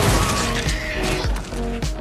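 Film sound of a pickup truck hitting a person: a crash at the start, over background music with held tones.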